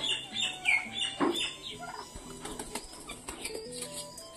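A flock of pigeons feeding on the ground, with wings flapping, and a run of short, falling high-pitched chirps in the first second and a half.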